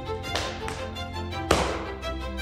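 Fiddle folk music with a steady melody. Sharp hits cut through it: a light pair about a third of a second in and a louder one about a second and a half in.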